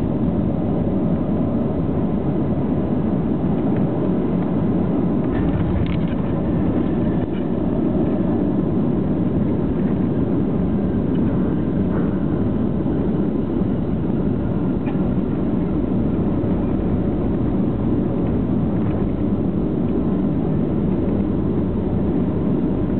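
Cabin noise inside a Boeing 737-700 touching down and rolling out on the runway: a steady, loud rumble of engines, airflow and wheels, heard over the wing with flaps and spoilers deployed.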